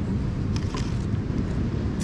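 Wind buffeting the microphone: a steady low rumble, with a few faint clicks in the middle.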